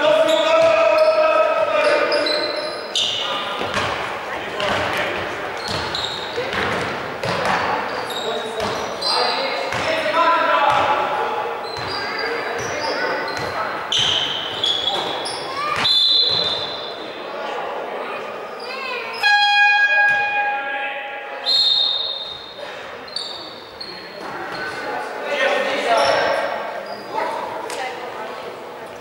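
Basketball game in a large echoing gym: a basketball bouncing on the wooden floor, short high squeaks and players' and coaches' voices calling out. About two-thirds of the way in, a steady horn-like tone sounds for about a second.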